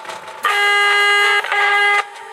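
Marching band brass playing a loud held chord that comes in about half a second in, breaks off briefly, then sounds again. A few sharp percussion hits come before it.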